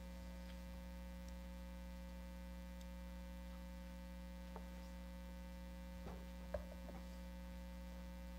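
Steady electrical mains hum on the meeting-room audio feed, with a few faint knocks in the second half.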